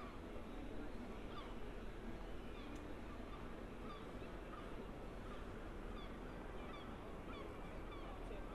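Birds calling: many short, clipped calls that come more often in the second half, over a steady low city hum.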